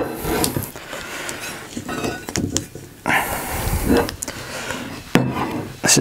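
Autoprop H6 feathering propeller being handled on a wooden workbench: irregular metallic clinks, knocks and scrapes as the hub and a loosened blade are turned and shifted.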